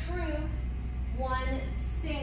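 A woman's voice in two short, drawn-out phrases, one at the start and one about a second and a half in, over a steady low hum.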